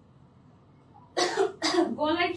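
A woman coughing twice in quick succession about a second in, after a quiet moment of room tone.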